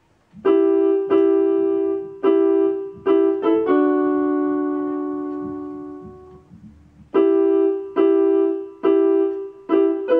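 Digital keyboard in a piano voice playing a short phrase of the song being written: a few two-note chords struck in rhythm, then a chord held and left to fade for about three seconds, then the repeated chords again.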